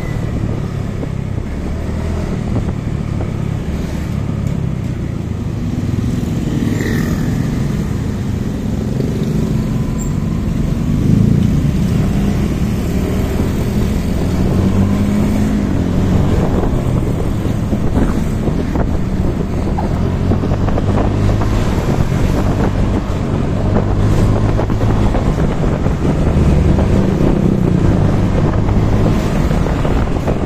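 Motorcycle engine running steadily while riding, with wind noise on the microphone.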